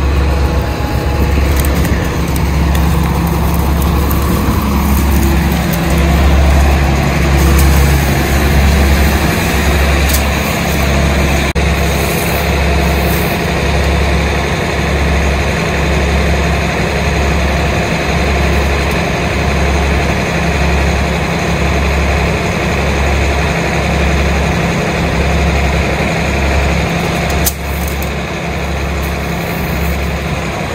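A large engine running steadily with a low throb that pulses about once a second.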